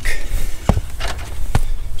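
Two heavy footsteps or knocks about a second apart as a man in foam-padded Cougar Paws roofing boots climbs from a ladder onto a house roof, over a steady low rumble of wind on the microphone.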